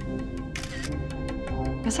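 Background music, with a phone camera shutter sound about half a second in, a short burst of high-pitched noise.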